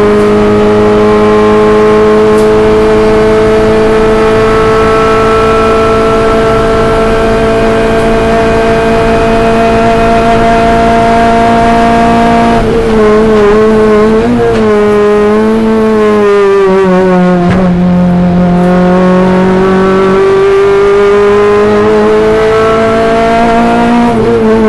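In-car sound of a 2009 Renault Clio Cup race car's four-cylinder engine at high revs. Its pitch climbs slowly for about twelve seconds along a straight, then wavers and drops as the car slows for a corner, and rises again as it accelerates over the last few seconds.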